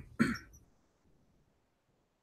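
A man clearing his throat: one burst trailing off right at the start and a second short one a quarter second later.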